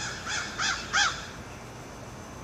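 A crow cawing four times in quick succession, the last caw the loudest.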